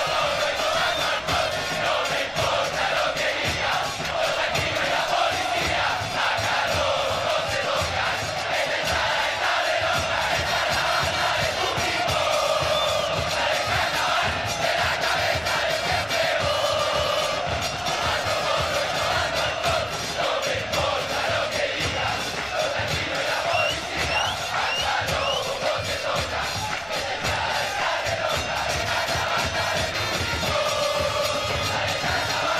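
Recorded football supporters' chant: a crowd singing together in unison over music with a steady beat.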